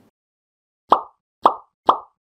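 Three short pop sound effects, about half a second apart, as like, comment and share icons pop onto an animated end screen.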